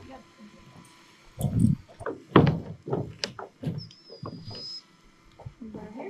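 Footsteps and knocks on a wooden roof deck, with a couple of heavy thumps between about one and a half and two and a half seconds in. A short, thin high tone is heard near the four-second mark.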